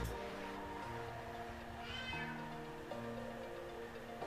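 Soft background music with long held notes, and a domestic cat meowing once about two seconds in.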